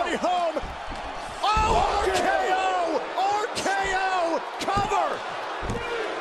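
Professional wrestling broadcast audio: raised voices with several sharp thuds of impacts on the ring mat.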